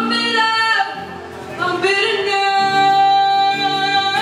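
A woman singing live with two acoustic guitars accompanying her. A held note gives way to a brief quieter dip about a second in, then a long, steady sung note carries through the second half.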